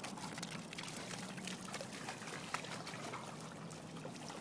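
Golden retriever digging in a shallow muddy puddle, splashing and sloshing the water, with a quick irregular run of small wet splatters.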